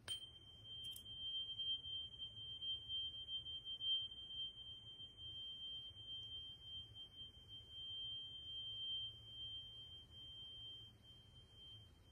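A small metal chime struck twice, at the start and again about a second later, then ringing on with a single high, pure tone that wavers in loudness.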